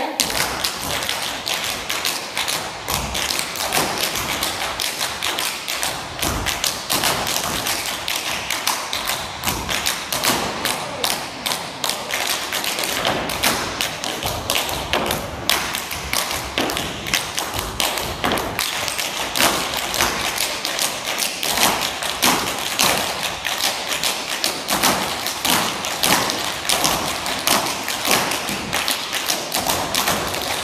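Tap shoes of a group of dancers striking a wooden stage floor, a dense run of sharp taps and heavier stamps in quick rhythmic patterns.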